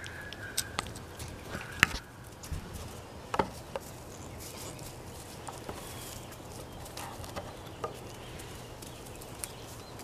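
Scattered light knocks and rustles of goat hooves, a doe and her young kid moving about on hay and dirt, the sharpest knock about two seconds in. A faint thin high note sounds during the first two seconds.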